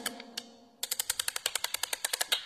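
A single sharp click, then from a little under a second in a fast, even run of sharp clicks, about nine a second.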